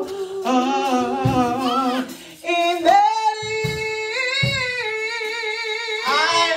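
A woman singing a slow gospel solo through a microphone and the church sound system, her voice wavering with vibrato. She breaks off briefly about two seconds in, then holds one long note through the second half.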